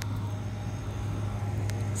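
Outdoor air-conditioning condenser units running, a steady low hum that holds one pitch.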